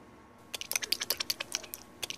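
A rapid, irregular run of sharp, short clicks, several a second, starting about half a second in after a moment of quiet.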